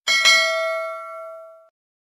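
Bell-chime sound effect for a notification-bell icon being clicked. It is struck twice in quick succession and rings out with several clear tones, fading away over about a second and a half.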